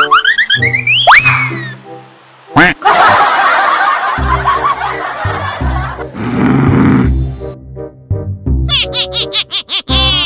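Comedy background music with cartoon sound effects: a falling and then a rising pitch glide near the start, a stretch of laughter in the middle, and a quick run of repeated boings near the end.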